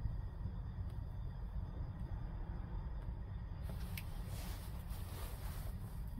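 Quiet puffing and faint ticks as a tobacco pipe is lit and drawn on, with a soft hiss about four seconds in, over a steady low rumble.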